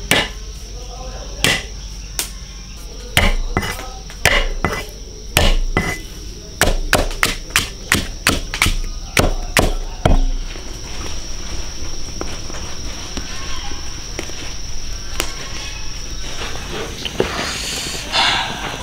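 Cleaver chopping ginger and scallion on a thick wooden chopping block: a quick, irregular run of knocks for about ten seconds. After that comes a softer, steady noise from the wok of ribs at a rolling boil, under a steady high insect drone.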